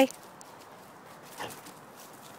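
A dog gives one brief, quiet whine about one and a half seconds in, over a quiet outdoor background.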